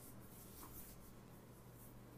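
Near silence: faint room tone with a steady low hum and a thin, flickering high hiss.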